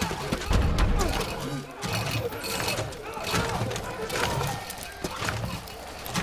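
Action-film sound effects of a gunfight in a cave: sharp gunshots and bullets striking metal armour, mixed with heavy thuds in the first second and men shouting.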